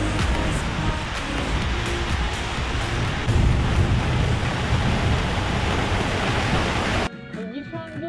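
Heavy wind and rain in a storm, a dense steady hiss of wind on the microphone and driving rain, with background music underneath. It cuts off abruptly about seven seconds in, leaving quieter guitar music.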